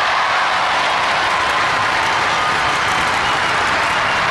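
Studio audience applauding, a steady dense clapping.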